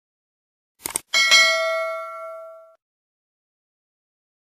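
Subscribe-button animation sound effects: a short click about a second in, then a bell ding that rings out and fades over about a second and a half.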